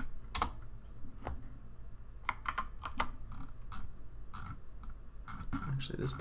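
Computer keyboard keys clicking in irregular short runs of typing.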